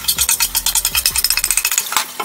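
Tap water splashing onto a plastic cutting board as it is rinsed in a stainless steel sink: a fast, even patter that stops just before the end.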